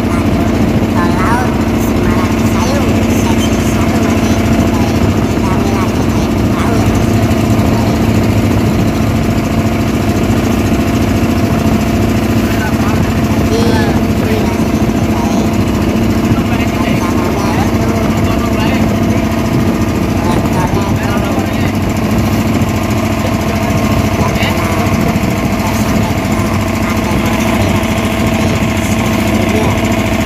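The engine of a small wooden boat running steadily under way, loud and at an even pitch throughout.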